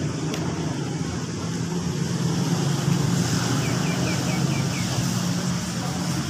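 Steady low hum of a running vehicle engine. About three and a half seconds in comes a short run of about six quick, high, falling chirps.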